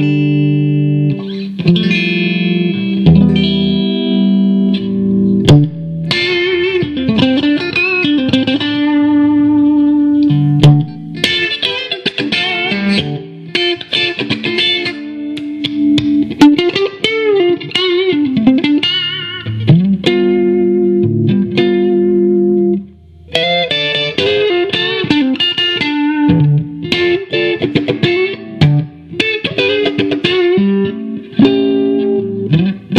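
1968 Fender Pink Paisley Telecaster, amplified electric guitar: sustained chords at first, then single-note lead lines with string bends and vibrato, with one brief break about 23 seconds in.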